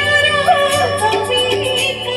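A woman singing an Odia song over live band accompaniment, her melodic line gliding and bending in pitch.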